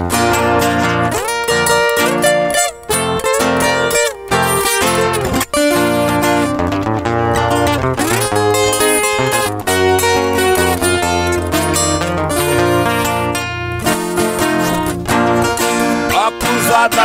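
Viola caipira and acoustic guitar playing an instrumental passage of a moda de viola, a steady run of plucked notes with no singing.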